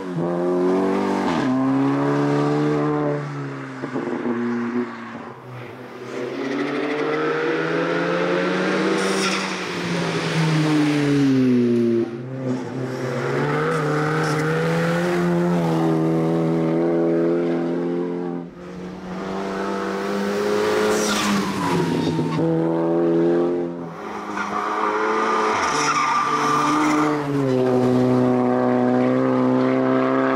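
VW Golf GTI hill-climb race car's engine revving hard, its pitch climbing through each gear and dropping off at gear changes and lifts for corners, over several passes with abrupt jumps between them.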